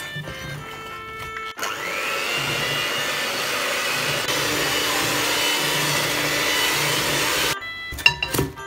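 Electric hand mixer beating butter and icing sugar into buttercream. About a second and a half in, it comes in loud with a whine that rises as it speeds up, runs steadily, then cuts off shortly before the end. Background music plays at the start.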